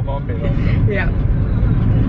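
Car cabin noise while driving: a steady low rumble of engine and tyres heard from inside the moving car, with a brief spoken "yeah" about a second in.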